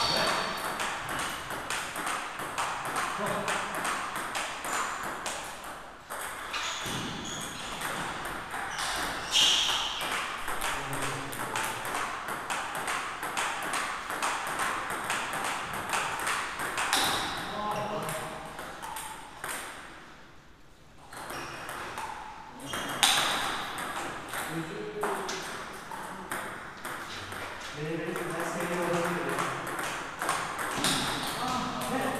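Table tennis rallies: the ball clicks back and forth off the bats and the table, with a short lull about twenty seconds in. Voices carry across the hall.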